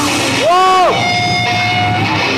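A short shout about half a second in, its pitch rising and then falling, followed by a steady high held tone of about a second from the band's amplified stage sound, over live venue noise.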